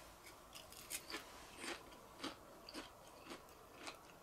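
Crisp tempura of young tara-no-me (Japanese angelica-tree shoots) being chewed, a run of short, sharp crunches about two a second.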